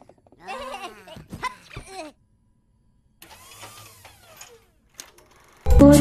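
Cartoon Minion characters babbling in high, warbling gibberish voices, followed by a softer rushing sound. Loud music cuts in suddenly near the end.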